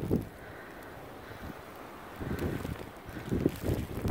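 Snowstorm wind blowing steadily, then gusting onto the microphone in low rumbles about two seconds in and again near the end.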